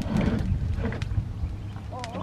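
A heavy thud as a large, freshly caught catfish is set down on wooden boards, followed by low scraping and rubbing as its body is shifted about on the wood. A short rising-and-falling bird call comes near the end.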